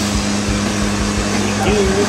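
Sherp amphibious ATV's diesel engine running steadily as the machine pushes through pond water, heard as a constant hum.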